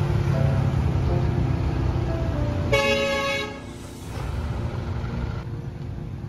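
Road traffic of motorbikes and cars passing, with one short vehicle horn honk a little before the middle.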